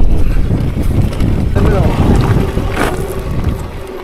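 Electric mountain bike rolling down a rough gravel track: tyres rumbling and the bike rattling over stones, with wind buffeting the microphone. It eases off toward the end, and a short voice-like call is heard about one and a half seconds in.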